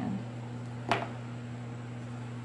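A steady low hum runs throughout, with one short, sharp click about a second in.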